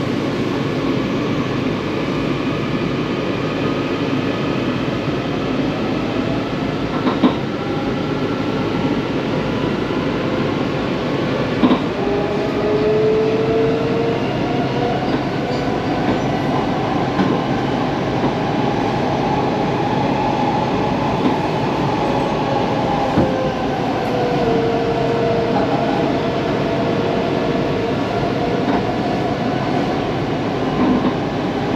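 Washington Metro train heard from inside the car as it pulls out of the station. The traction motors whine, rising in pitch as it gathers speed, over a steady rumble of wheels on rail, with two sharp clicks about a third of the way in.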